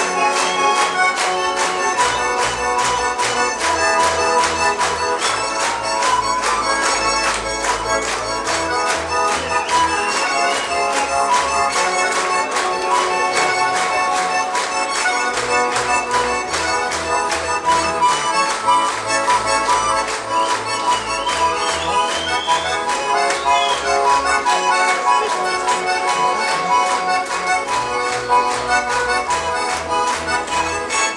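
A Russian garmon (red button accordion) played solo and live: a fast instrumental passage of chords over a pulsing bass, in a quick, even rhythm.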